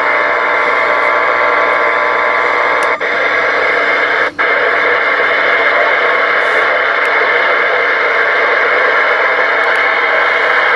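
Stryker SR-955HPC transceiver's speaker giving a loud, steady hiss of receiver static, with two brief dropouts about three and four and a half seconds in.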